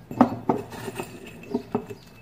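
Pieces of dried grapefruit peel dropping into the metal bowl of an electric coffee grinder, about five light clicks and clinks against the metal.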